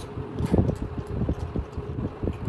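Close-miked chewing and mouth smacking of a man eating chicken biryani by hand: a quick, irregular run of short mouth sounds, loudest about half a second in.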